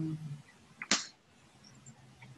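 A short hummed 'mm' fading out at the start, then a single sharp click about a second in.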